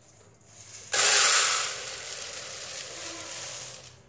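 Dry split lentils (yellow arhar and red masoor dal) being poured from a steel plate into a plastic storage jar. The grains make a rushing hiss that starts suddenly about a second in, is loudest at first, then runs evenly and stops just before the end.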